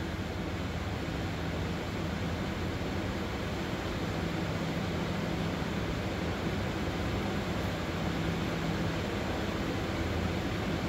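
Steady, even hiss with a low hum underneath that does not change: continuous background room noise.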